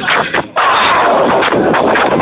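Loud dance music and crowd noise overloading a phone microphone, heard as a dense, heavily distorted wall of sound, with a brief dip about half a second in.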